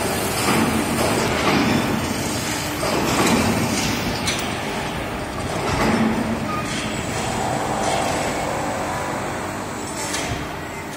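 Continuous heavy machinery noise in a concrete pole plant, with a few sharp metal clanks.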